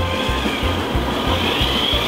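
Background music with a steady bass beat, about three beats a second.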